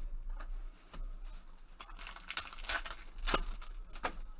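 Foil trading-card pack wrappers crinkling and tearing under gloved hands, with cards being handled: scattered crackles at first, then a dense run of crinkling from about two seconds in, loudest just before the end.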